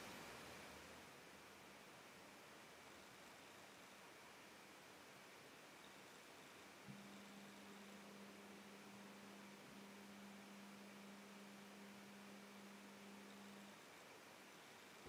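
Near silence: faint hiss of room tone. About halfway through, a faint, steady low hum starts with a small click and stops shortly before the end.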